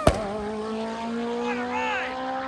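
Drag-racing car accelerating away down the strip. A sharp crack comes at the very start as it shifts gear, and the pitch drops. Then the engine note climbs steadily in pitch.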